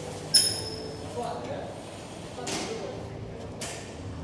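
A single sharp metallic clink with a brief high ring about a third of a second in, then two short rustling swishes near the end, over faint background voices.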